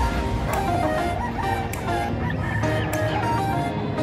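Caged gamecocks crowing and clucking, under background music.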